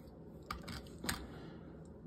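A few light clicks of small die-cast metal toy cars being handled, set down on a tabletop and picked up, between about half a second and a second in.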